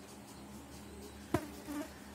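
Marker writing on a whiteboard: a sharp tap about a second and a half in, then short faint squeaks of the tip, over a steady low electrical hum.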